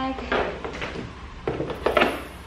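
Rustling and light knocking of small items being pulled out of a car door pocket, with a plastic bag handled alongside; a few short bursts, the sharpest near the end.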